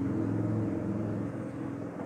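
A steady low mechanical hum with a faint rumble, easing off slightly toward the end.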